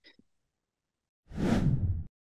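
Whoosh sound effect for a video transition. It starts a little past halfway after near silence and cuts off suddenly at the end.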